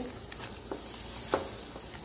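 Pot of beef rib and vegetable broth simmering on the stove, a soft steady bubbling hiss, with two faint taps as a cabbage wedge is lowered into the pot.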